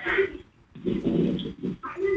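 A female caller's voice coming over a telephone line, giving wordless, whimper-like sounds rather than clear words.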